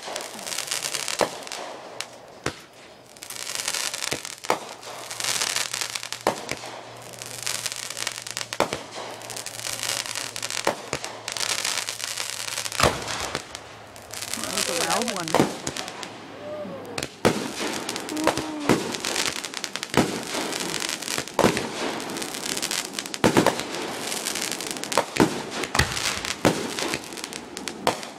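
Consumer aerial fireworks going off one after another: many sharp bangs of bursting shells spread through the whole stretch, with a hissing, crackling rush between them as the rising trails and sparks burn.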